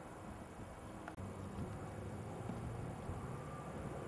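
Faint, steady low rumble of a distant Airbus A330's jet engines at taxi power, with a single short click about a second in.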